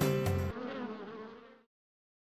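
A cartoon bee's buzzing sound effect: a wavering buzz that takes over when the music stops about half a second in, then fades away.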